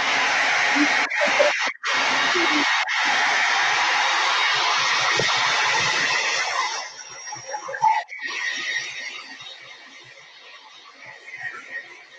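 Handheld blow dryer running with a steady rushing noise, drying the paint on a canvas; it cuts out briefly a few times in the first three seconds and is switched off about seven seconds in.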